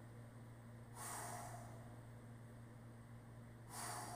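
A man's breathing during sit-ups: two forceful exhales, each about half a second long and nearly three seconds apart, the breath of effort with each rep. A low steady hum runs underneath.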